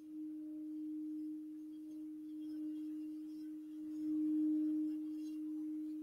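Crystal singing bowl sung by a wand circling its rim: one steady, sustained tone with faint overtones, swelling a little louder about four seconds in.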